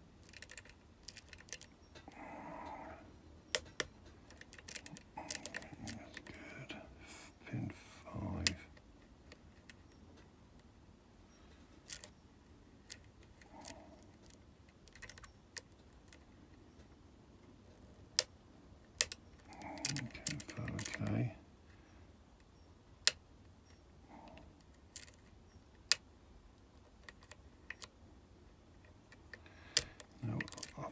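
Irregular small metallic clicks and ticks from a lock pick and tension tool working inside a 5-pin Medeco cylinder, a few of the clicks sharper and louder. All pins are already set at shear, and the clicking is the pick rotating them to line up the sidebar.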